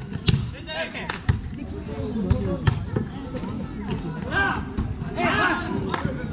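Basketball being dribbled on a concrete court, a series of sharp bounces a fraction of a second to about half a second apart, with talking and chatter from players and onlookers.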